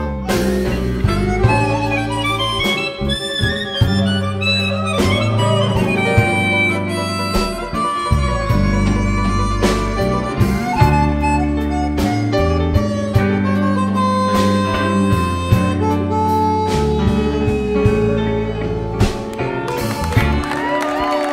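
Live blues band: a harmonica cupped to a handheld microphone plays a solo line with bending notes over electric bass, drums, guitar and piano.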